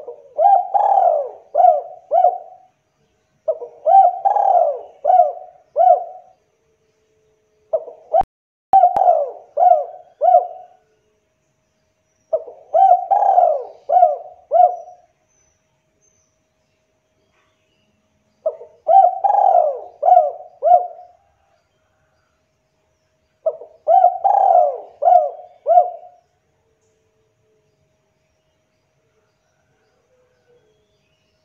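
Spotted dove (tekukur) cooing: six phrases of several throaty coos each, spaced a few seconds apart. This is the full, persistent song of a dove in strong calling form ('gacor').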